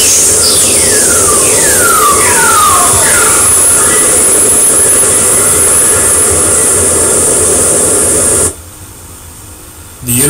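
Whistlers, very-low-frequency radio waves picked up by the Polar spacecraft's Plasma Wave Instrument wideband receiver and played back as sound. Several falling whistle tones sound one after another over a loud steady hiss in the first few seconds; the whole cuts off suddenly about eight and a half seconds in. Whistlers are set off by lightning, and their pitch falls because the radio wave spreads out as it travels along the Earth's magnetic field lines.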